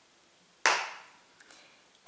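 A single sharp knock about two-thirds of a second in, fading quickly, then a faint click a moment later: a makeup item being put down on a hard surface while putting the blush away and picking up the lip liner.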